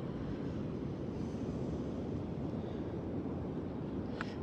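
Wind rumbling steadily on the microphone, a low, even noise with no separate events.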